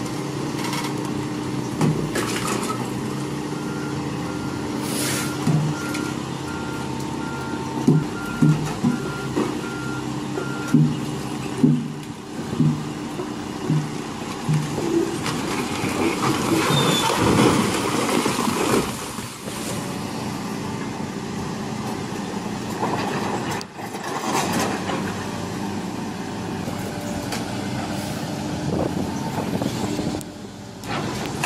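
Volvo crawler excavator's diesel engine running steadily while a beeping alarm sounds for several seconds and a series of short knocks follows. About halfway through, a huge marble block topples and crashes down the quarry face in a loud, noisy rumble lasting a few seconds.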